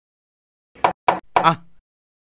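A man's voice: three quick syllables about a second in, breaking a dead-silent soundtrack.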